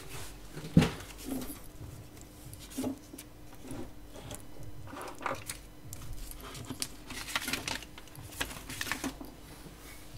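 Scattered clicks, taps and rustles of an electric guitar being handled and turned over, with a faint steady hum underneath.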